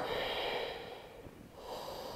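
A woman breathing slowly and audibly close to the microphone while holding a stretch: one breath that fades away, then a second starting about a second and a half in.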